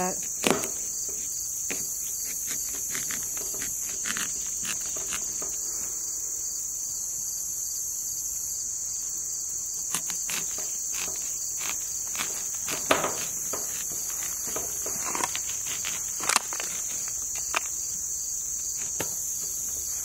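A knife slicing into the thick rind of a Moon and Stars watermelon, heard as scattered crackles and clicks with a few sharper cracks partway through. Behind it, insects chirr in a steady high-pitched drone.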